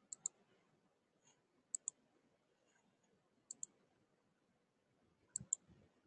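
Computer mouse clicking in quick pairs: four double-clicks spaced roughly a second and a half apart over quiet room tone, with a soft low bump near the end.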